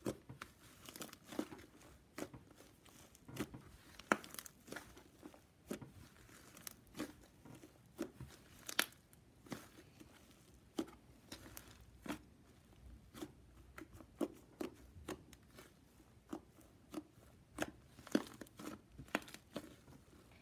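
Fluffy slime mixed with little foam balls being kneaded and pressed by hand, giving irregular crackling pops and clicks, several a second, as air pockets and foam beads are squeezed.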